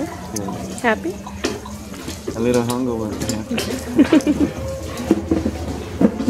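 Several voices talking indistinctly at once, overlapping chatter with no clear words.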